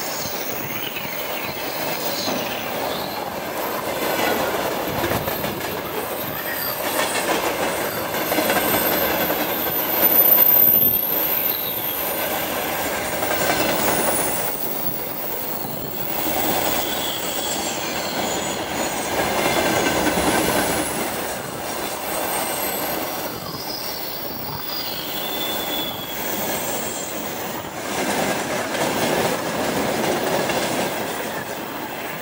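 Freight train wagons rolling past close by: a continuous rumble and clatter of steel wheels on the rails that swells and dips as the cars go by. Thin high wheel squeals come and go over it.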